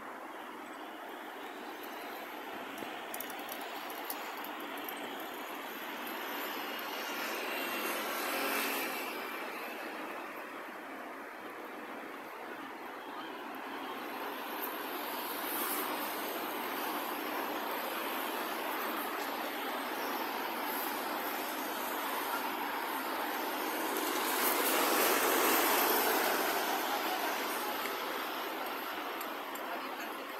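Road traffic on a city street: a steady wash of tyre and engine noise, swelling louder as vehicles pass about a third of the way in and again near the end.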